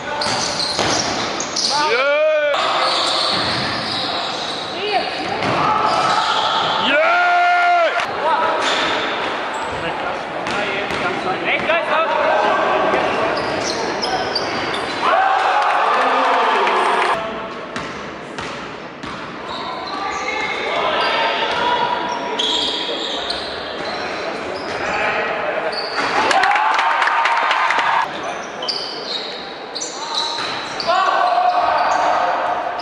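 Live basketball game sound in a large gym: the ball bouncing on the court, players and spectators calling out, and a few short shoe squeaks on the floor.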